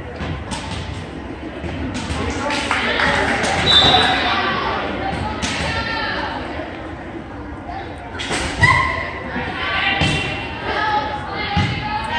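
Indistinct chatter of spectators echoing in a school gymnasium, with a few thuds of a volleyball bouncing on the hardwood floor, the clearest in the last third.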